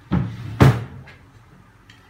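A short scraping rustle followed by one loud thump about half a second in.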